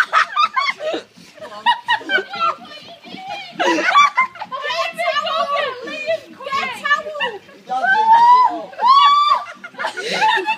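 Several people talking and calling out in high, excited voices, with some laughter.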